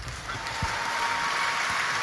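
Large concert audience applauding, the clapping swelling in the first half-second and then holding steady.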